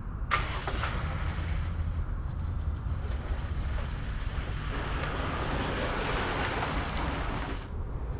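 BMW 7 Series sedan running and pulling away, a steady low engine rumble with engine and tyre noise building over the second half and then cutting off just before the end. A brief knock sounds near the start.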